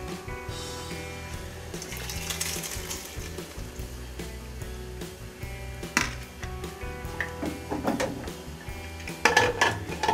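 Soaked corn kernels poured from a bowl into an aluminium pressure cooker, then a knock and a quick run of metal clanks as the pressure cooker's lid is fitted and locked near the end, over steady background music.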